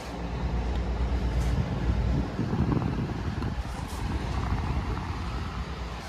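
GE PTAC (packaged terminal air conditioner) running after start-up, a steady low hum and rush of fan and compressor heard up close at the unit's grille.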